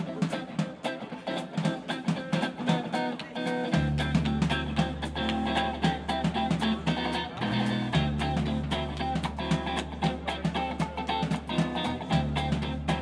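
Live rock band playing a song intro without vocals: electric guitar over a steady drum rhythm, with an electric bass line coming in about four seconds in and dropping out briefly near the middle.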